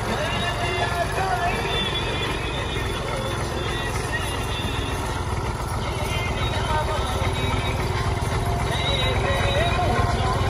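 Farm tractor engine running steadily as it drives, a low pulsing rumble, with a song's wavering vocal melody over it.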